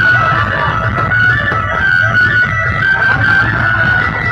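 Loud DJ music played over a large sound system, with heavy bass and a held high melody line running continuously.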